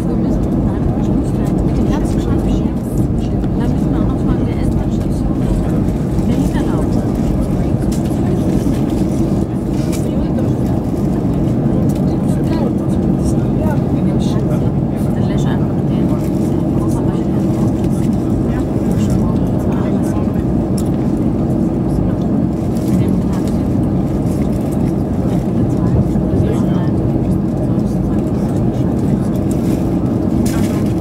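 Steady cabin noise of an Airbus A320 heard from inside the cabin as it taxis onto the runway and holds, engines idling: a constant low hum with a few steady tones and no spool-up.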